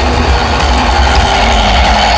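Background music over the steady running noise of a motorised Lego Duplo toy train rolling along its plastic track.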